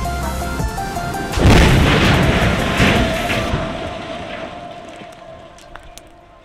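Background music, then about a second and a half in a loud boom as the blasted concrete stair tower crashes to the ground. The boom dies away slowly over about four seconds while a held music note carries on.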